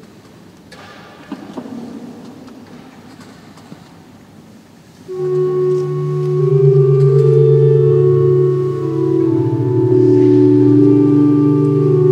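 A few faint rustles and light clicks, then about five seconds in organ music starts: loud sustained chords whose notes change slowly.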